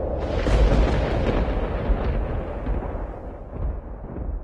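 Explosion sound effect: a sudden blast about a third of a second in, followed by a deep rumble that slowly dies away.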